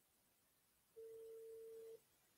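A single steady electronic beep at one mid pitch, about a second long, starting about a second in over near silence: a telephone-style call signal from a call connection that is failing.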